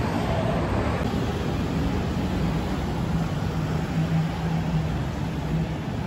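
City street ambience: a steady rumble of traffic with a low, even hum running underneath.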